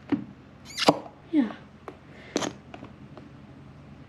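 Slime squelching as a squishy stress ball filled with slime is squeezed and the goo is pushed out of it: two short, sharp squelches about a second and a half apart.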